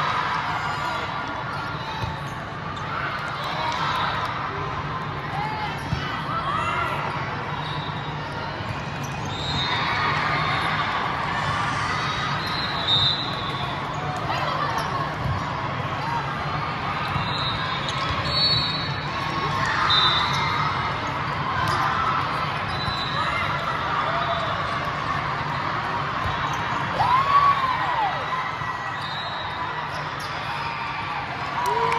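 Indoor volleyball play in a large hall: ball hits and bounces and squeaking shoes on the court over a steady murmur of crowd voices, a little louder near the end.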